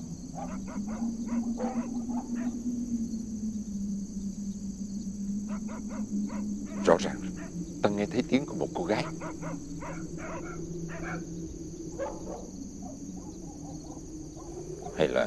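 Dogs barking in short bursts over a steady chorus of crickets, with a low, steady hum beneath.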